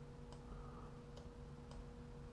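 Near silence: a few faint clicks of a computer mouse over a faint steady hum.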